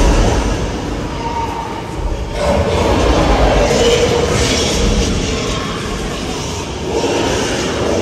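Loud sound effects of a dinosaur fight played through an attraction's sound system, heard from inside a tram: a deep continuous rumble, with a drawn-out roar from about two and a half to four and a half seconds in.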